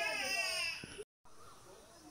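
A high, wavering voice for most of the first second, cut off by a brief dropout to silence, followed by faint background sound.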